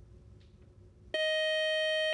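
Quiz-show time-up buzzer: one steady electronic tone, about a second long, that starts suddenly about halfway through and cuts off sharply, signalling that time has run out with no team answering. Before it, only faint studio room tone.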